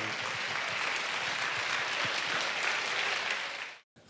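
A large crowd applauding steadily, cut off suddenly just before the end.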